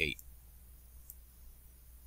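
The end of a spoken word, then a faint steady hum with a faint click about a second in, typical of a computer mouse being clicked while drawing on screen.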